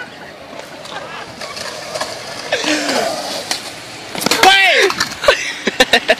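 Skateboard wheels rolling on concrete under voices calling out. A short call comes about two and a half seconds in and a loud shout a couple of seconds later, followed by a few sharp clacks near the end.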